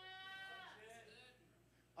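Faint congregation voices calling out in response. One high, held call in the first moment falls away, fainter voices follow, and it goes nearly quiet near the end.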